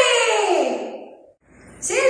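A woman's voice holds one long vocal note that falls in pitch and fades out about a second and a half in. Her voice starts again near the end.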